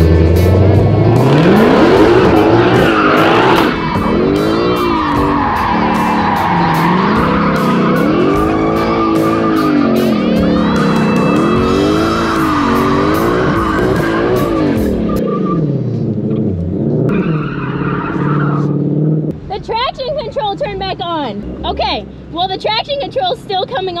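Shelby Mustang V8 heard from inside the cabin, revving up and down over and over against the rev limit with tyre squeal as a burnout is tried. About fifteen seconds in, the traction control comes back on and cuts power: the engine note flattens out, then drops away about nineteen seconds in.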